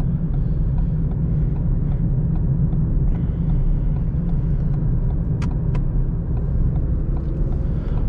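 Cabin noise of a 2013 Ford Fiesta 1.0 EcoBoost on the move: its three-cylinder engine running along with tyre and road rumble, a steady low drone.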